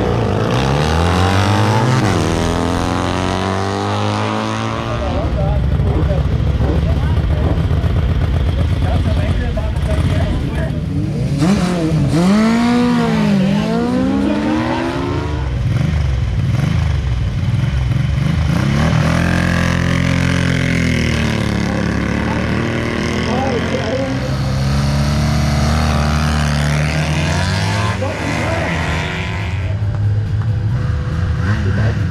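Motorcycle engines revving and accelerating in eighth-mile sprint heats, the pitch climbing and falling as the bikes rev up and pull away, over a steady engine drone.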